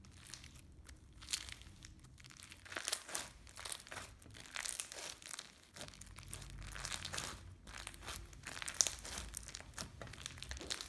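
Stretchy slime packed with foam beads (a 'popcorn crunch' slime) being stretched, squeezed and pressed by hand, giving dense, irregular crackling and crunching from the beads.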